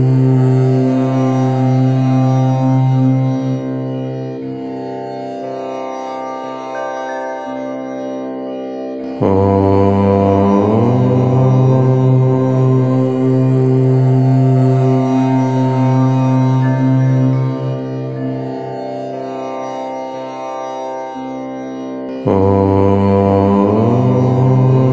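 Low voice chanting Om in long, held tones, each chant swelling and then fading away. New chants begin about nine seconds in and again near the end, the second sliding briefly in pitch as it starts.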